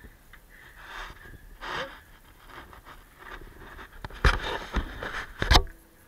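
Donkeys sniffing and blowing close to the microphone, a few soft breathy puffs, then three loud, sudden bumps or scrapes against the microphone from about four seconds in.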